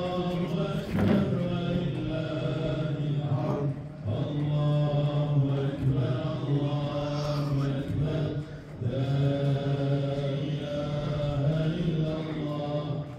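A man chanting an Islamic religious recitation, holding long melodic notes. He sings in three long phrases with two short breaks for breath.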